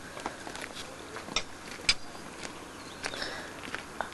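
Low steady hiss with a few scattered sharp clicks and light scuffs.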